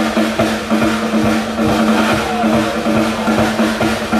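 Live rock band playing through a PA: a drum kit keeps a steady beat under electric guitars and one long held note.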